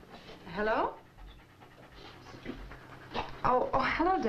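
A dog panting, with a brief woman's voice on the telephone about half a second in and again near the end, over a faint steady hum.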